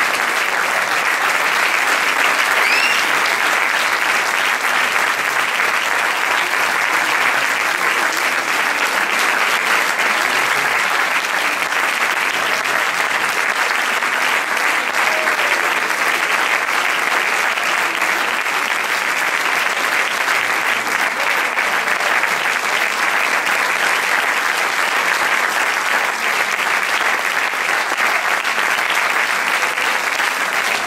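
Concert audience applauding, a steady, dense clapping that holds at the same level throughout, with a brief high whistle about three seconds in.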